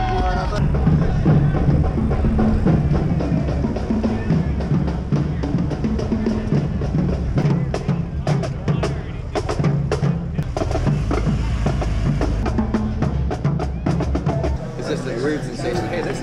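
A marching drumline of snare drums and bass drums playing a fast cadence, the bass drums heavy underneath. It stops suddenly about a second and a half before the end.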